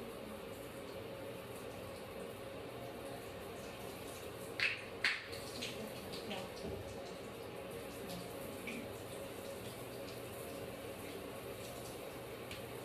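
Water in a bathtub during a child's hair wash: a steady faint rush with a hum, broken by two short sharp sounds about four and a half and five seconds in and a few softer ones after.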